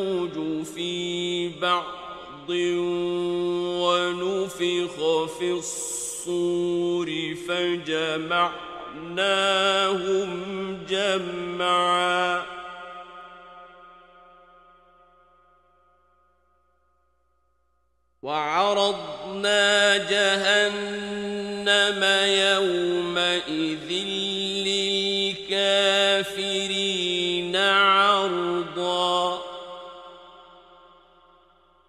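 A man's voice in ornamented, melodic (mujawwad) Quran recitation, long notes sustained and embellished. About twelve seconds in, the phrase ends and the voice dies away in a long echo, and the recitation resumes about eighteen seconds in.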